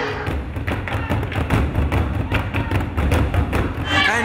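Drum-led music: a quick run of repeated drum strikes with deep, pulsing thuds underneath.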